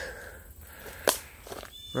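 Footsteps on dry leaf litter and sticks, with one sharp crack about a second in.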